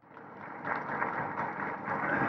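Audience applauding, swelling over the first half second and then holding steady.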